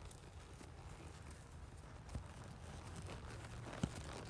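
Horse's hooves on a soft dirt arena at a working jog: faint, dull hoofbeats over a low steady rumble, with a few sharper hoof strikes in the second half as the horse comes close.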